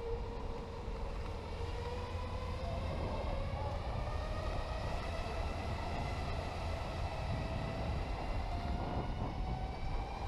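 Electric go-kart's motor whining as it drives, the pitch rising slowly with speed, over steady low road and tyre noise.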